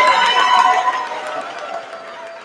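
Audience cheering and clapping, a dense mix of many voices and claps that dies down from about a second in.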